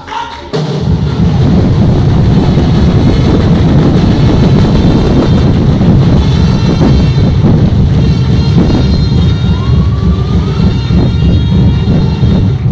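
Loud drumming, heavy on the bass drum, breaking in suddenly about half a second in and going on steadily.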